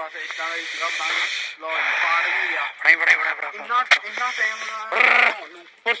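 People talking in bursts, with patches of hissing noise under and between the voices.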